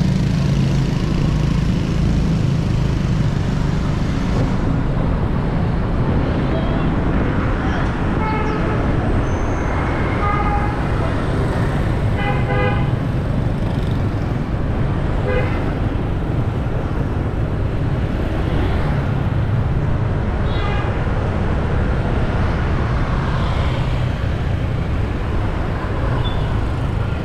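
Riding a motorbike through dense scooter and car traffic: a steady engine and road rumble with wind on the microphone. Several short horn toots sound around it, the most in the middle stretch, including a quick run of repeated beeps.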